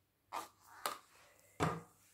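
Three short knocks and rustles of hands handling a paint cup and tools on a plastic-covered work table; the third, about a second and a half in, is a heavier bump.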